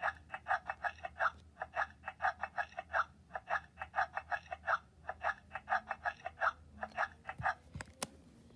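Baby Alive Grows Up doll's electronic baby voice from its small speaker: a fast, even run of short baby syllables, about five a second, going on without a break.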